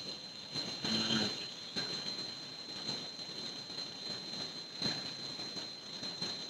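Faint room noise picked up through a camera's built-in microphone, with a steady high-pitched whine, a brief murmur about a second in and a few light clicks. Skype has switched the audio to that microphone.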